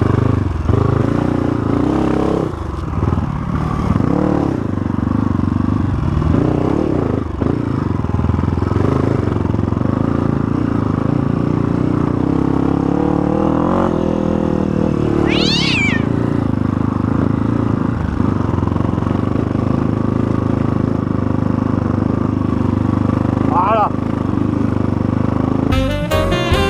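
Honda CRF250F dirt bike's single-cylinder four-stroke engine running under load on a trail ride, its revs rising and falling with the throttle, with a sharp climb in revs about halfway through.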